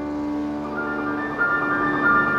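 Solo grand piano playing a classical piece: held notes ring in a softer passage, then brighter upper notes come in about halfway through.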